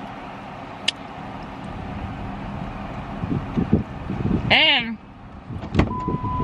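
Steady background noise inside a parked car, with a sharp click about a second in and a short hummed vocal sound a few seconds later. Near the end a car door latch clicks as the passenger door is opened.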